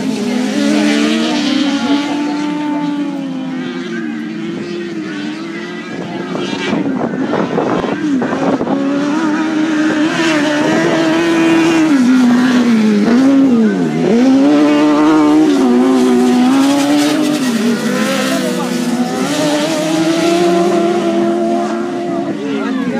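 Dirt-track race car engines revving, their pitch rising and falling as the cars accelerate and lift off around the circuit, with several engines overlapping.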